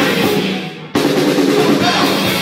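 Live punk rock band (electric guitars, bass and drum kit) playing loud. About half a second in the band stops and the sound dies away, then everyone comes back in together, hard, about a second in.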